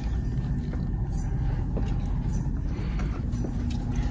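Steady low background rumble with a few faint light clicks.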